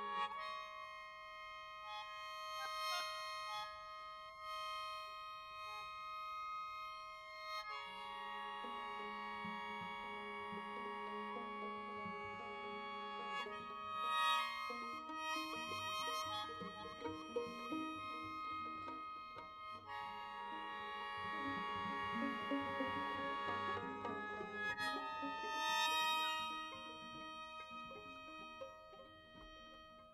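Live chamber music: a string quartet with a traditional Korean wind instrument playing long held chords that shift every several seconds, with busier moving notes in the middle. The music fades away near the end.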